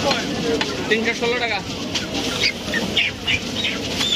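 Busy meat-market bustle with people talking, and a large curved butcher's knife chopping chicken on a wooden stump block in scattered strokes.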